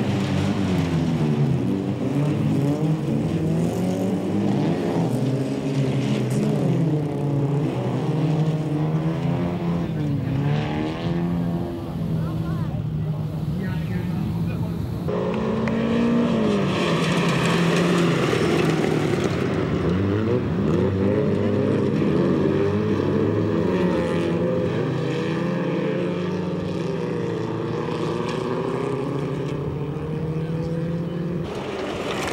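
Several folkrace cars' engines running hard on a dirt track, their pitch rising and falling as they accelerate, lift and pass. The sound changes abruptly about halfway through.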